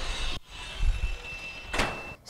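An automatic apartment door swinging shut on its power operator, with a low rumble about a second in and a thin steady whine in the second half, ending in a short knock as it closes.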